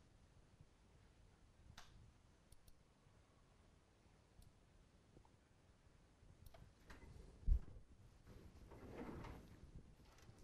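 Quiet room tone with a few soft, scattered clicks of a computer mouse as a document is zoomed and scrolled. There is a short low thump about seven and a half seconds in, and a faint murmur near the end.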